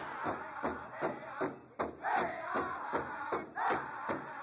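Background music of a steady drum beat, about two and a half strokes a second, with several voices chanting over it.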